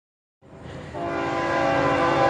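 Diesel freight locomotive's air horn sounding one long, steady chord of several tones. It starts about half a second in and grows louder as the train approaches.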